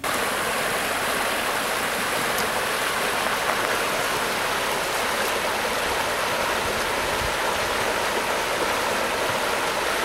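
Creek water running over a small riffle, a steady rushing hiss that starts abruptly and holds even throughout.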